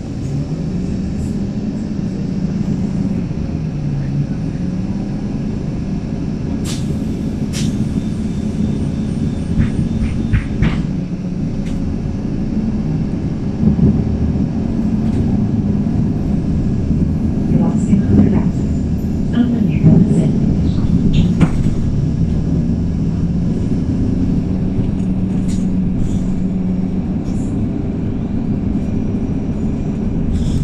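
Inside the cabin of a MAN 18.310 city bus: its compressed-natural-gas engine drones with the Voith automatic gearbox, the pitch rising and falling as the bus speeds up and slows, mixed with road rumble. Short rattles and knocks come from the body about a third of the way in, and the drone grows louder and busier around the middle.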